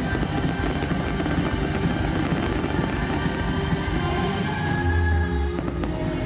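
Firework-show soundtrack music playing over outdoor loudspeakers, with a dense low rumble of fireworks bursting overhead for most of the stretch. The rumble eases near the end, leaving held notes of the music clearer.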